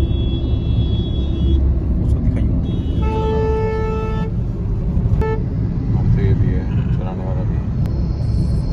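Steady low road and engine rumble heard from inside a moving car. A vehicle horn sounds for just over a second about three seconds in, with a short toot about a second after it ends.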